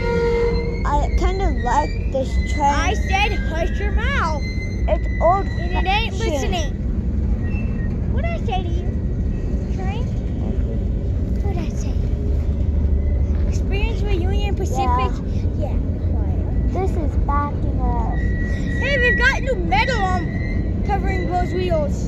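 Covered hopper cars of a freight train rolling past on the rails: a steady low rumble of wheels and trucks, with a high steady squeal near the end.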